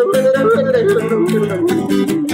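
A man yodeling, his voice stepping up and down between pitches, over a steadily strummed acoustic guitar.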